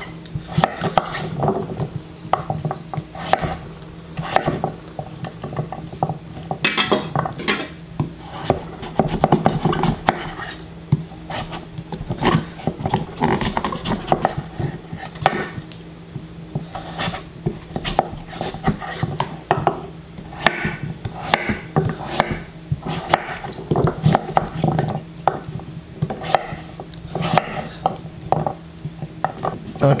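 Chef knife cutting raw butternut squash into cubes on a wooden cutting board: repeated knife strokes through the firm flesh, each ending in a knock on the board, at an uneven pace of one to several a second.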